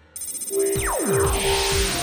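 Synthesized cartoon transformation sound effect as a robot boy's wing suit powers on. A shimmering high electronic ring switches on right at the start, then falling pitch sweeps come in a little under a second in, over a steady hum and a low pulsing throb.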